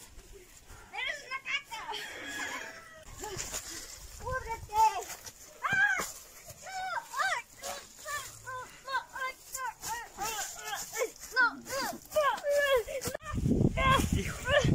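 A child's high-pitched voice crying out again and again in short rising-and-falling cries, with no clear words. A low rumbling noise starts near the end.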